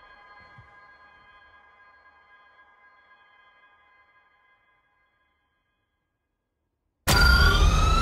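A held, ringing musical chord fades away over about four seconds into silence. About seven seconds in, a sudden loud sound-effect hit cuts in, with several rising electronic whines over it.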